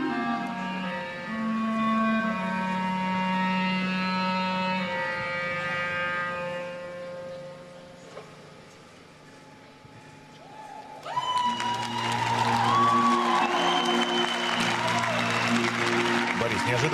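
Orchestral music with long held chords that fades away around the middle. About eleven seconds in, loud music starts again together with audience cheering, shouting and applause.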